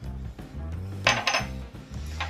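Soft background music with a short clatter of kitchenware about a second in, as a plastic spice shaker is handled and taken away from over a glass mixing bowl.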